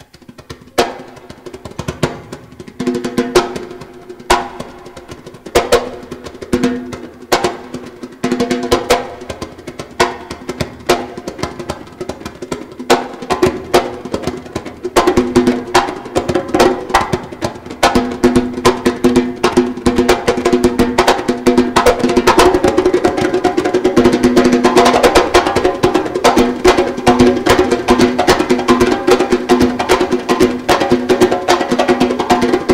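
Live hand-drum solo on djembe-type drums: separate strikes with pauses at first, building in speed and loudness into fast, continuous drumming over the second half.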